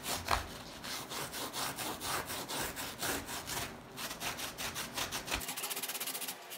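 The applicator tip of a sneaker-cleaner bottle scrubbing back and forth over the knit upper of a Yeezy Boost 350 V2, working the cleaner into the dirty fabric. It makes a steady rasping rub of repeated strokes that come quicker near the end.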